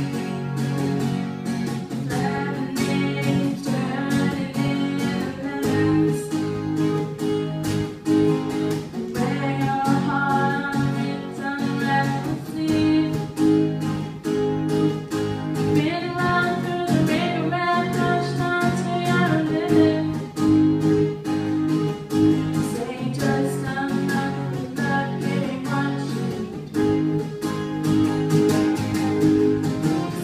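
Live acoustic song: an acoustic guitar played in a steady rhythm accompanying a woman singing into a microphone.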